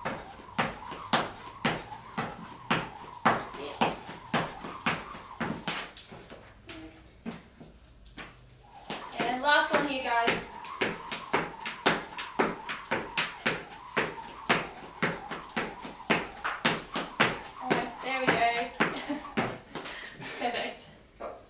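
Skipping rope slapping a rubber gym floor in time with single-leg hops, a steady rhythm of about two to three sharp clicks a second, with a short break about seven seconds in.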